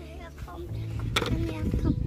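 Children's voices over faint background music and a steady low hum, with one sharp knock a little past a second in.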